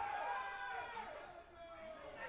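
Faint, distant shouting voices of players on an open football pitch, a few short raised calls that glide in pitch.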